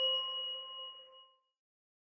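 A bell-like chime from a logo sting, ringing out from a single strike and fading away, gone by about a second and a half in.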